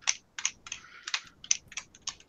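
A quick, irregular series of light clicks, about four a second, with a brief scratchy rub just before the middle.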